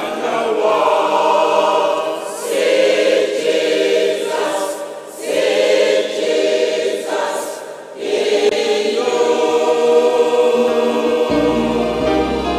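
Large choir singing a slow gospel hymn in sustained, swelling chords, phrase by phrase. Low bass accompaniment notes join near the end.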